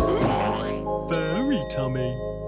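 Children's cartoon soundtrack music with sustained notes and comic sound effects: sliding boing-like pitch glides, one rising and falling near the middle.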